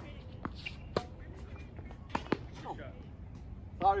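Tennis ball being struck by rackets and bouncing on a hard court during a doubles rally: several sharp pops, two of them close together a little after two seconds in. A man's voice briefly near the end.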